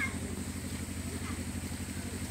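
A steady, low engine drone with a fast, even pulsing, such as a small engine idling, under a thin steady high whine.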